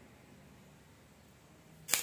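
Quiet room tone, then near the end one sharp clack with a short ring: a metal spoon knocking on a nonstick frying pan as whole spice seeds are tipped into it.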